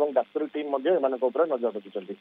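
A man speaking Odia over a telephone line, sounding thin as through a phone, in continuous quick syllables.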